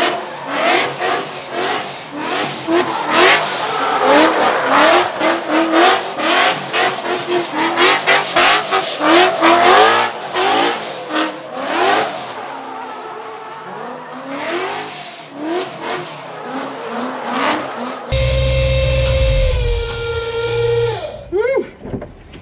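Drift-spec Ford Mustang V8 revved hard up and down again and again while the rear tyres screech and spin in a drift. For the last few seconds it settles to a steady low idle.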